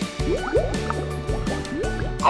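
A thick fruit smoothie is poured from a blender bottle into a glass jar, making a series of short rising glugs over background music.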